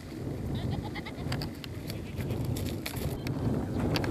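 Goats bleating a few times over a steady low rumble, likely wind on the microphone.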